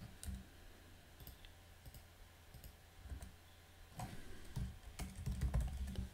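Faint keystrokes on a computer keyboard: a couple of isolated clicks at the start, then a quick run of keys with soft thumps in the last two seconds as a name is typed.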